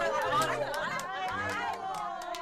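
A group of women chattering and laughing over one another, with a few scattered hand claps.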